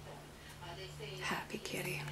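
A person's soft, whispered voice in short snatches, over a steady low hum.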